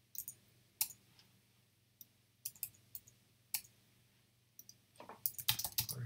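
Computer keyboard and mouse clicks. A few scattered single clicks come first, then a quick run of typing near the end.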